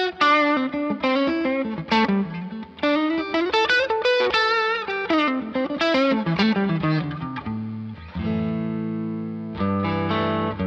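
Chapman DPT T-style electric guitar played through an amp: quick lead lines with string bends, rising and falling in pitch, then held notes left ringing from about eight seconds in.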